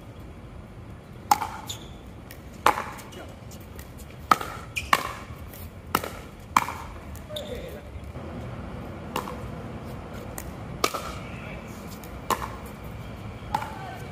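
Pickleball paddles striking a plastic ball in a doubles rally: about ten sharp, ringing pocks, most of them a second or so apart, with a pause in the middle.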